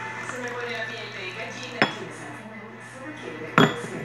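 Ceramic teaware clinking twice, sharp and short, once a little before halfway and again near the end, as a small teapot and cups are set down on saucers. Background television talk and a low hum continue underneath.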